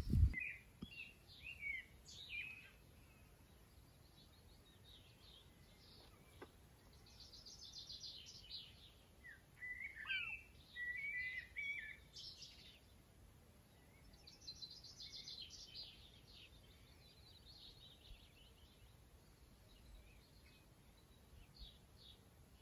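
Small birds singing outdoors: scattered high chirps and several fast, high trilled phrases a few seconds long. A single low thump sounds right at the start.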